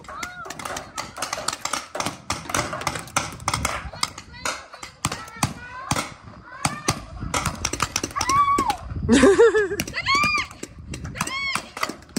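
Paintball markers firing across the field, an irregular run of sharp pops with bursts of several in quick succession, mixed with players' shouted calls that grow loudest near the end.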